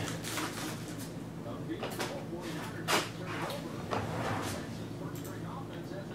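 A cardboard trading-card blaster box being opened and handled: scattered scrapes, rustles and clicks, the most distinct about three seconds in, over a steady low hum.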